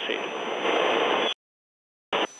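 Steady rushing noise of a helicopter, heard through the crew intercom. It cuts off abruptly to dead silence a little over a second in.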